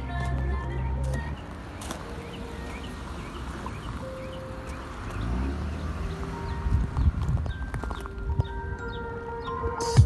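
Music playing from an outdoor landscape speaker set in gravel, its bass strong at first, then fading and building again from about halfway. Footsteps crunch on gravel as the listener walks up to the speaker.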